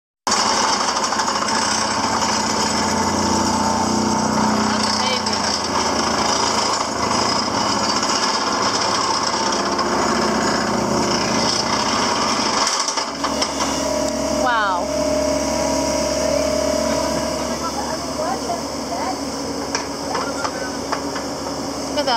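Excavator-mounted vibratory pile hammer driving a steel pipe pile, a loud, steady, fast vibration. About thirteen seconds in it stops, and the excavator's engine runs on with a steady hum.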